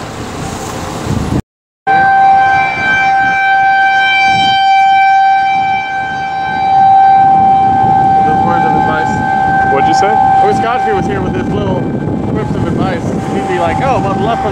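Outdoor tornado warning siren sounding one steady tone, starting about two seconds in after a brief cut-out, with wind rumbling on the microphone underneath.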